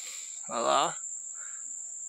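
An insect's continuous high-pitched call, one steady unbroken tone, with a short voiced syllable from a man about half a second in.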